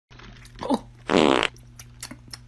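A fart sound: a short squeak about two-thirds of a second in, then a longer, louder buzzy one lasting under half a second.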